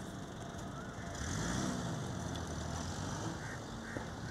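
A low engine rumble, like a motor vehicle, swells about a second in and carries on, its pitch rising and falling. A single sharp knock comes right at the end.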